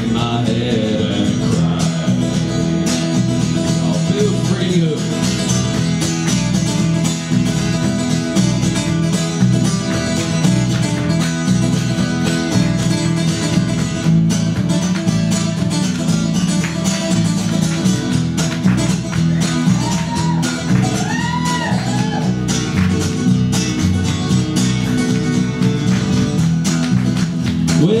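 Acoustic guitar played alone in a steady strummed country rhythm, an instrumental break without singing, with a few sliding notes about twenty seconds in.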